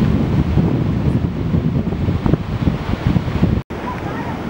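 Wind buffeting the microphone on an open beach: a loud, uneven low rumble, with surf faintly behind it. The sound drops out for an instant near the end.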